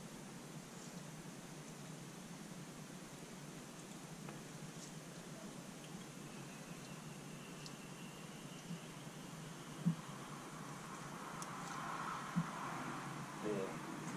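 Quiet room tone with faint handling noise of a motorcycle engine cylinder turned over in gloved hands, with a couple of light knocks in the last few seconds.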